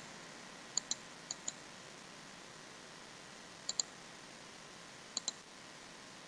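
Computer mouse clicking quietly: four pairs of quick clicks spread over a few seconds, over faint room hiss.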